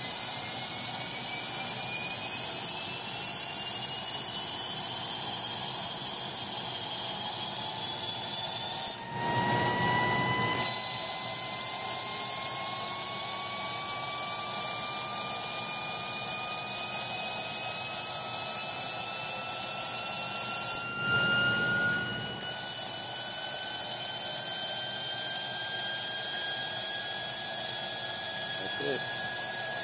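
Bryant 100,000 rpm high-speed spindle running on a test bench, a high whine rising slowly and steadily in pitch as the spindle is brought up in speed during its final run-off test. The sound briefly dips twice, about nine seconds in and again about twenty-one seconds in.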